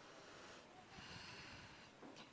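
Near silence, with a faint intake of breath by the reciter at the microphone, about half a second to two seconds in, as she breathes in before the next phrase of recitation.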